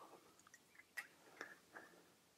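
Near silence broken by a few faint scrapes and clicks as the arms of a fold-up stove stand are slid onto the lip of a butane canister.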